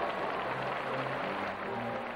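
Music with long held notes that shift in pitch every half second or so, over a steady background hiss.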